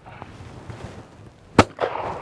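A single shotgun shot at a clay target, about one and a half seconds in, with a short echo trailing after it.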